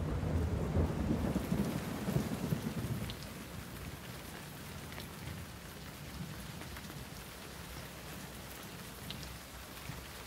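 A rumble of thunder over steady rain. The thunder fades out about three seconds in, leaving the rain with a few faint ticks of drops.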